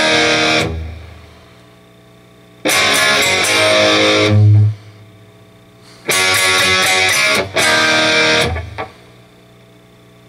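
Electric guitar played through a Mesa/Boogie amplifier in short rock phrases of chords and notes, each breaking off into a pause of a second or two. A heavy low note ends the second phrase.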